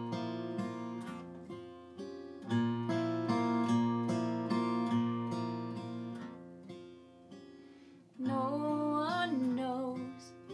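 Acoustic guitar playing a slow song introduction, chords left to ring and fade between changes, dying down before a louder chord about eight seconds in.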